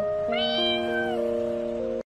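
A single kitten meow, just under a second long, starting about a third of a second in, over background music of sustained notes.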